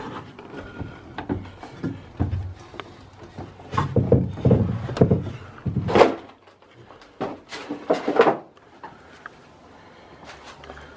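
Footsteps, knocks and scuffs on bare timber framing and subfloor as someone climbs up into an unfinished upper storey. The sounds are irregular and come loudest in clusters from about four to six seconds in and again around eight seconds.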